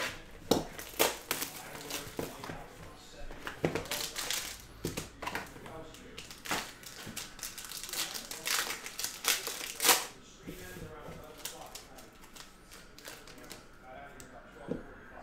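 Plastic wrap being cut and peeled off a sealed Topps Five Star baseball card box, with crinkling plastic and a quick run of sharp clicks and taps from the box and cards, busiest in the middle.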